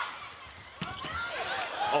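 Volleyball rally: a few sharp smacks of hands on the ball, the first at the start and another under a second in, over arena crowd noise with scattered shouting voices.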